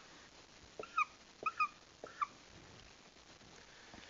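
Dry-erase marker squeaking on a whiteboard as short dashes and a parenthesis are drawn: four short, high squeaks between about one and two and a half seconds in, with light taps of the tip.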